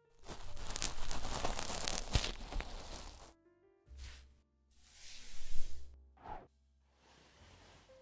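Scratchy, rustling rubs of a cotton swab wiping inside an ear, an ASMR sound effect: one long rub of about three seconds, then shorter strokes around four, five and six seconds in. It goes nearly silent for the last second and a half.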